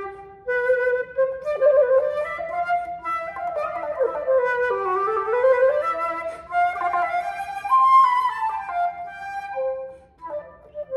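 Silver Brannen flute with a Jack Moore headjoint played solo in a melodic passage, with a short breath just after the start and quicker moving notes in the middle. It is a play test of the flute after its mechanical issues were fixed in an overhaul.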